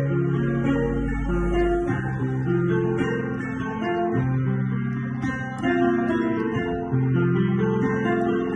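Grand piano played with both hands: a slow chord progression, each chord held for a second or two before the next, with a deep bass note under the first two seconds.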